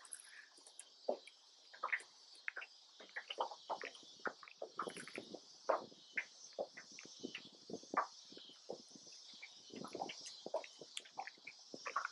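Scattered light clicks and knocks from fishing tackle and movement in a small aluminium jon boat, coming irregularly several times a second, over a faint steady high-pitched hiss.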